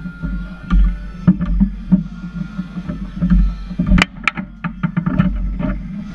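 Table-football (foosball) match play: the ball and the rod-mounted players clack and knock while the rods slide and thud against the table. A run of quick sharp hits starts about four seconds in, with the loudest crack at its start.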